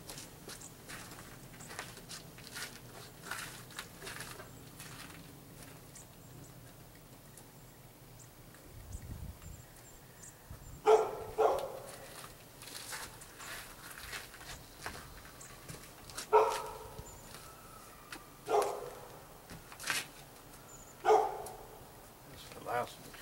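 A dog barking: about five short barks spread over the second half, with faint clicks and handling noises before them.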